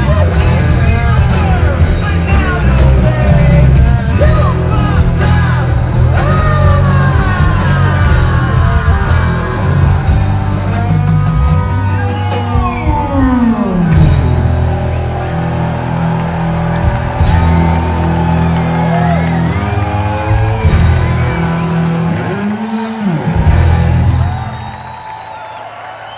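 Live rock band playing loud, with electric guitar sliding and bending in pitch over bass and drums, and some yelled vocals. The song stops about 24 seconds in.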